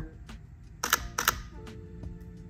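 Camera shutter firing for a bracketed HDR exposure: two sharp clicks less than half a second apart, near the middle.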